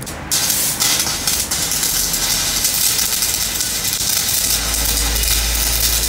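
Stick (shielded metal arc) welding on a steel camshaft: the electrode arc strikes about a third of a second in and then crackles and hisses steadily as weld is laid onto the shaft. A low steady hum joins about four and a half seconds in.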